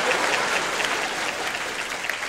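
Studio audience applauding, the clapping slowly dying down.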